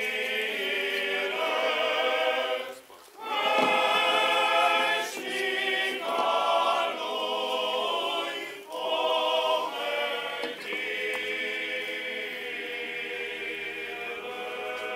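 Male choir of Orthodox clergy singing a funeral hymn unaccompanied, in long held phrases with brief breaths for new phrases about three seconds in and again near nine seconds.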